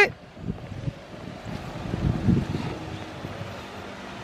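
Jeep Wrangler's engine running at low speed as the vehicle creeps back into a driveway, with wind on the microphone.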